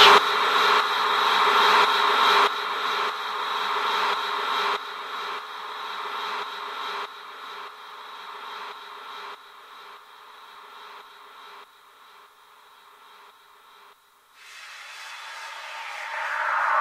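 Electronic trance music fading out: a synth tail with no bass dies away in steps over about twelve seconds into near silence. Near the end a rising swell of noisy sound starts the next track.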